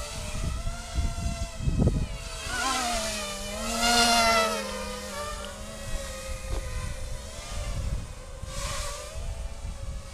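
Mini racing quadcopter's four brushless motors (RCX 1804, 2400KV) driving 5-inch three-blade props, a buzzing whine whose pitch rises and falls with throttle changes while it hovers. It is loudest about four seconds in.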